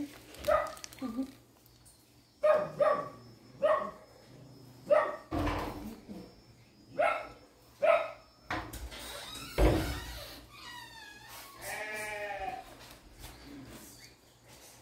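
Livestock bleating: a series of short calls, then a longer wavering call near the end, with a couple of dull thumps in between.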